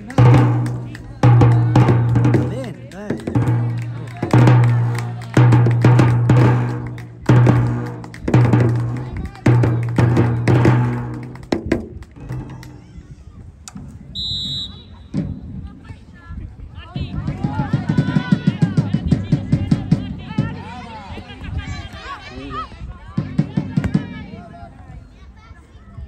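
A drum beaten steadily about once a second, each stroke ringing briefly, for the first dozen seconds. About fourteen seconds in comes one short, trilling blast of a referee's pea whistle, and then voices call out across the pitch.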